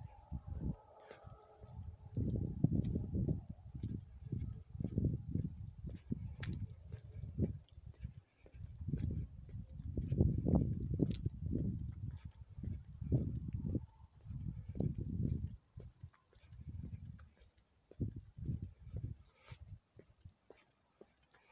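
Irregular muffled low thumps and rustling, several a second with short pauses: a phone being handled and carried while walking, footfalls and rubbing on the microphone.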